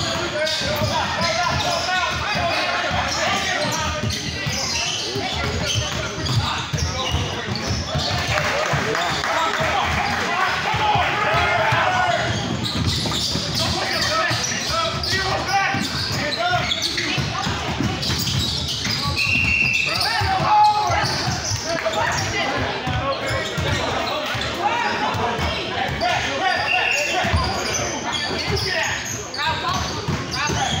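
A basketball being dribbled and bouncing on a hard gym floor in a large echoing hall, under continuous chatter and calls from players and spectators. A short whistle blast comes about two-thirds of the way through.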